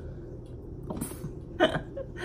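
A woman's short bursts of laughter: a breathy snort about a second in, then a louder laughing burst near the end.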